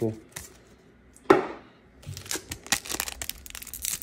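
Foil wrapper of a Pokémon booster pack crinkling and tearing as it is opened by hand, a dense run of sharp crackles starting about halfway through. A single louder rustle comes about a second in.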